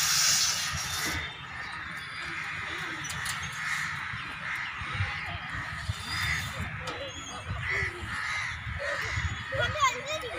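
A bird cawing again and again in short harsh calls, with children's voices at play around it.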